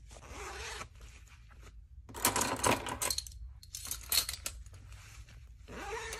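Hands handling packaging items in a plastic basket: four short bursts of rustling and scraping, with brief pauses between them.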